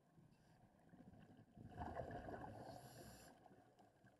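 Scuba diver's exhaled bubbles rising from a regulator, one faint rushing burst heard underwater starting about one and a half seconds in and lasting under two seconds.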